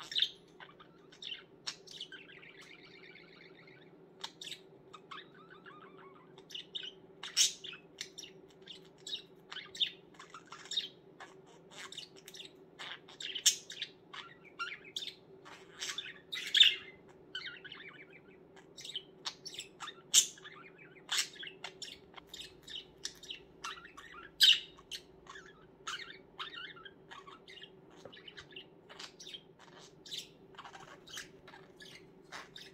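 Pet budgerigar chatter: a continuous run of short, high chirps, squeaks and warbles, with a faint steady hum underneath.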